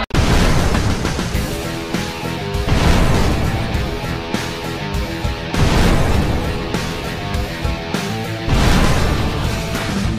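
Cinematic logo-sting music with heavy boom and crash impact hits coming every few seconds.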